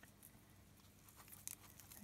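Near silence, with a few faint rustles and small clicks from fingers working blades of grass and a small rubber loom band, most of them near the end.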